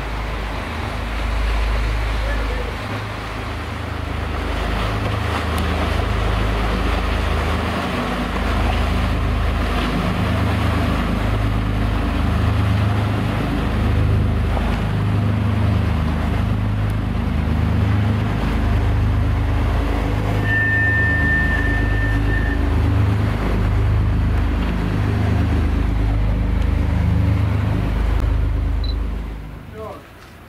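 Shannon-class lifeboat's twin diesel engines and waterjets running under way as the boat passes close, a loud, steady low rumble. A short, thin high whistle sounds about two-thirds of the way through.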